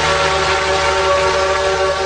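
Music: a rock band's song intro, one long chord held steady over a low drone.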